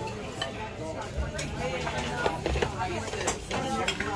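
A few short clinks of dishes and utensils over the background chatter of a busy restaurant.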